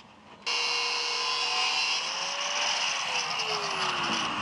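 Angle grinder with a cutting disc cutting steel plate, starting abruptly about half a second in. Its motor tone rises slightly, then falls steadily in the second half as the disc works through the metal.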